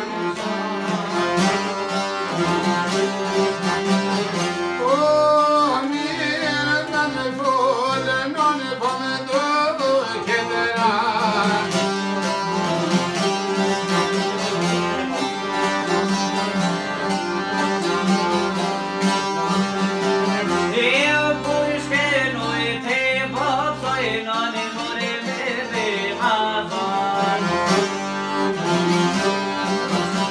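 Albanian folk ensemble playing together: an accordion with plucked long-necked lutes (çifteli-style two-string lutes and a round-bodied llaute). A man sings ornamented, wavering lines over the instruments a few seconds in and again past the middle.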